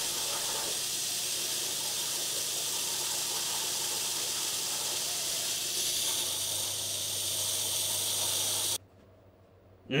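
WAZER desktop waterjet cutter's high-pressure jet hissing steadily as it cuts through a raw steak, with a faint low hum beneath. It cuts off suddenly near the end as the cut finishes.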